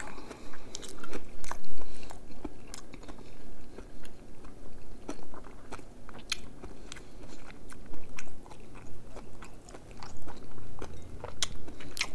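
Close-miked chewing of a mouthful of jjapaguri noodles with steak and kimchi, full of short wet mouth clicks and smacks.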